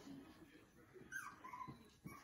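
A puppy whimpering faintly: two short, high whines in the second half, the first falling in pitch.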